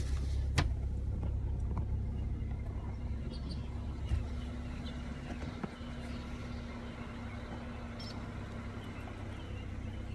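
Car engine running, a steady low rumble heard from inside the cabin with the window down, with a steady hum joining in a couple of seconds in; a sharp click just after the start.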